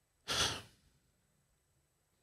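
A single short breath from a man pausing mid-sentence, heard close on a microphone.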